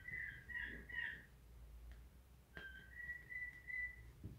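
Faint high whistling: a few short wavering notes in the first second, then one long steady note near the end.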